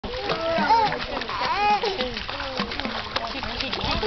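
Pool water splashing in quick, irregular slaps as a small child kicks while held in the water, with high-pitched voices over it, loudest about a second in and again around a second and a half in.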